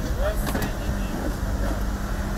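A motor vehicle's engine running with a low rumble and a steady hum, under men's voices, with a single knock about half a second in.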